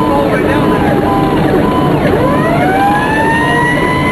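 Fire squad truck's Federal PowerCall siren wailing. Its pitch sinks through the first half, then about halfway it winds back up in a long steady rise. Over the first two seconds a second steady tone cuts in and out.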